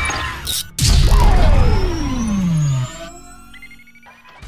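Intro sound-effect sting: a sudden heavy booming hit about a second in, followed by a tone that falls steadily in pitch over about two seconds, then fades.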